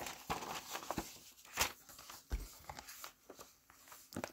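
Paper pages of a handmade junk journal rustling as they are turned and unfolded by hand, with scattered brief crinkles and light taps.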